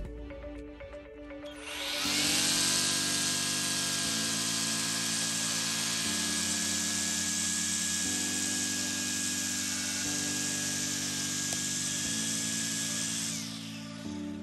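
Cordless EGO battery string trimmer with an Echo Speed-Feed 400 head running at speed, cutting grass along a concrete edge. It starts about two seconds in, runs as a steady whine over a loud hissing rush, and stops shortly before the end. Background music with chords changing every two seconds plays underneath.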